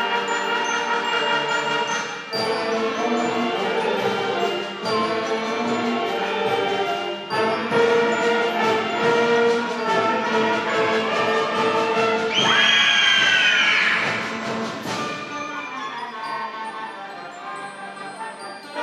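Eighth-grade concert band of woodwinds and brass playing in full chords. About twelve seconds in, a cluster of pitches slides downward, and then the band gets quieter toward the end.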